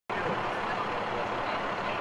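Steady outdoor noise of idling vehicles, with faint voices mixed in; it starts abruptly at the very beginning.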